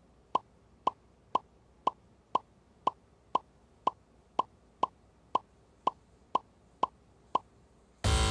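Quiz-show letter-reveal sound effect: a short, pitched electronic blip repeating evenly about twice a second, each blip marking one more letter taken off the countdown alphabet and revealed in the clue words.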